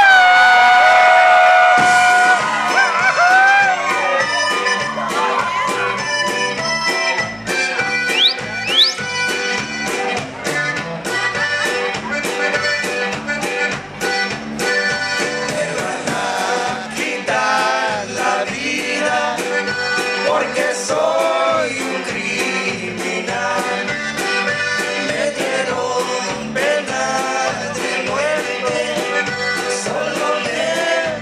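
Live Tejano conjunto band playing: a diatonic button accordion carrying the melody over bajo sexto, electric bass and drums keeping a steady beat.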